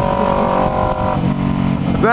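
Kawasaki Ninja 250R's parallel-twin engine running through a loud, open aftermarket Atalla exhaust while riding, its note shifting lower about a second in. The exhaust is out of place and sounds like a straight pipe, very loud.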